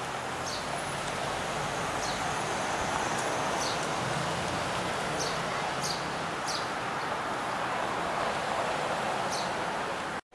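Small birds chirping repeatedly, short high downward chirps at irregular intervals, over a steady hiss of outdoor background noise.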